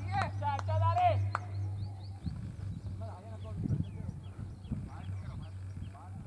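People talking close by for about the first second and a half, then only faint chatter, over a steady low hum.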